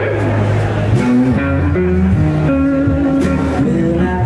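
Live blues band playing a slow blues: lead electric guitar on a Stratocaster over bass guitar and drums, with cymbal hits.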